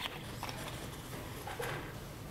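Footsteps on a hard stage floor, a few separate clacks, over faint hall room noise.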